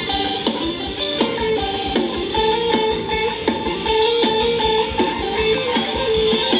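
Live band playing an upbeat Thai ramwong dance tune without vocals: a plucked-string lead, likely electric guitar, carries the melody over a steady beat.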